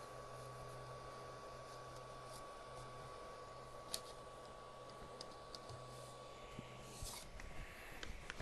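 Ender 3 V2 bed and print head pushed by hand to the middle: a few faint clicks and light taps over a steady low hum that stops about seven seconds in.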